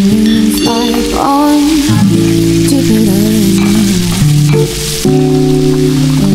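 Sliced zucchini, peppers and carrots sizzling as they fry in a steel pan and are stirred with a wooden spoon. Louder background music with sustained chords plays over it.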